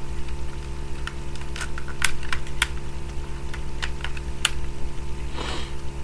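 Plastic parts of a Transformers Titans Return Overlord figure clicking and snapping as they are rotated and folded by hand: several irregular sharp clicks, over a steady low electrical hum.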